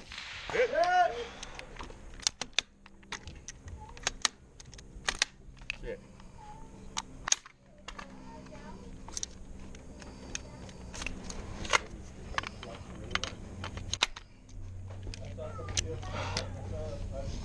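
Rifle fired single shot after single shot at long-range steel targets: many sharp cracks at uneven gaps of a fraction of a second to over a second.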